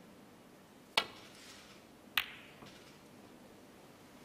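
Snooker cue tip striking the cue ball with a sharp click about a second in, then a second sharp click just over a second later as the cue ball strikes an object ball on a safety shot, followed by a faint knock.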